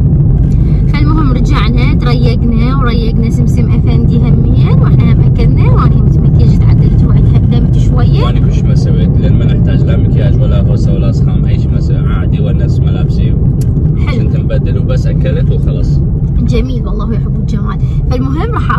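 A car on the move: a steady low road rumble, with voices talking over it.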